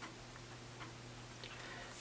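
Quiet room tone: a faint, steady low hum with a few soft ticks.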